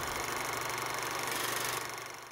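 Steady mechanical whirring of a film projector sound effect, fading out near the end.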